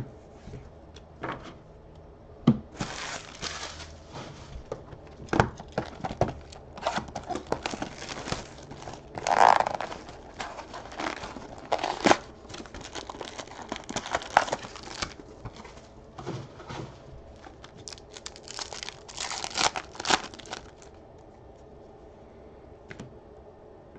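Foil wrapper of an Upper Deck Allure hockey card pack crinkling and tearing as it is pulled open by hand, in irregular rustling bursts, loudest a little before halfway through.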